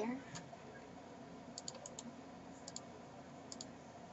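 Faint, light clicks of a computer mouse: a quick run of four about halfway through, then two quick pairs later on.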